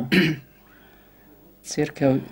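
A man clears his throat once, briefly, in a short rough burst.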